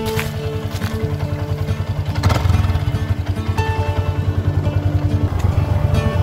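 A motorcycle engine running and pulling away, its low pulsing growing a little louder, under background music with plucked melodic notes.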